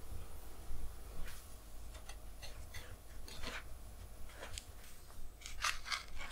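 Quiet handling sounds of breading fish: a scattered run of short scrapes and crunches as cod fillets are dipped in egg, pressed into dry breadcrumbs and laid on a plastic tray.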